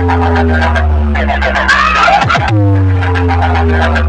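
Competition-style DJ remix played at high volume through a stacked speaker-box sound system: a heavy, sustained bass drone with a slowly falling synth tone above it. About two and a half seconds in, a quick downward sweep brings a new bass note and the falling tone starts again.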